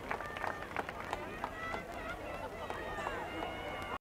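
Stadium crowd in the stands: scattered clapping, shouts and chatter as the applause thins, cutting off suddenly at the end.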